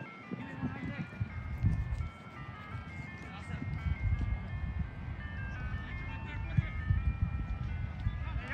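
A simple electronic melody of plain, steady notes stepping up and down in pitch, like a chime jingle, over a low rumble.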